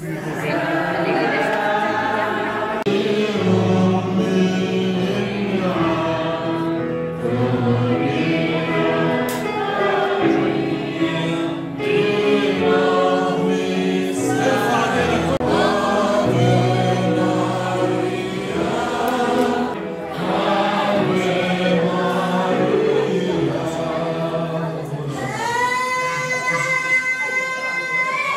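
A choir singing a hymn in sustained chords with a moving melody. Near the end a single held note slides up and holds.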